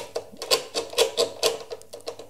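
A hard plastic part of a King Song S20 electric unicycle tapped or knocked repeatedly, about two to three times a second, each knock with a short hollow ring. It sounds very cheap.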